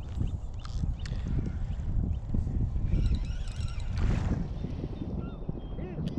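Wind buffeting the camera microphone, a steady low rumble with a few faint light clicks over it.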